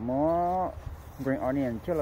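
Speech only: one person talking in Hmong, with a long drawn-out phrase at the start and more talk from just past the middle.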